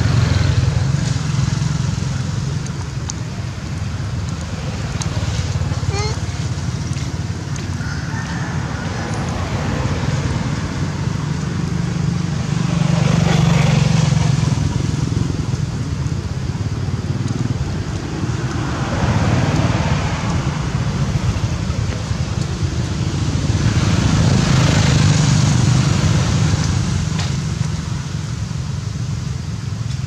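Outdoor background noise: a steady low rumble with slow swells that rise and fade about every six seconds, like passing motor traffic.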